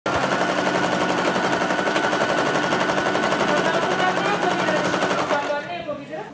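Singer electric sewing machine running fast as it stitches face-mask fabric, the needle going up and down in a quick steady rhythm. Near the end the motor slows and stops.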